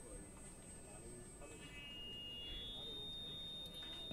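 Faint, steady high-pitched electronic whine from the public-address system, jumping to a lower tone about two seconds in, over a low murmur in the tent.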